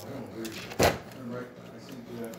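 De'Longhi La Specialista espresso machine pulling a shot, coffee running in a steady stream into the glass, with a single sharp knock a little under a second in.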